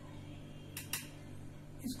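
Two light clicks of a spoon against a bowl as flour is spooned out, close together about a second in, over a steady low hum.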